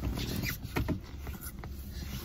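Several quick kisses planted on a cheek: a run of short, wet lip smacks.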